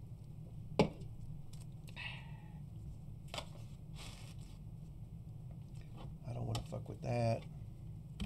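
Hard plastic graded-card slabs being handled and shuffled, with one sharp clack about a second in and a few fainter clicks and knocks after it, over a low steady hum.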